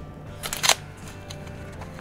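A short crinkle of a plastic record sleeve being handled, about half a second in, as a vinyl LP is shifted in its clear protective sleeve.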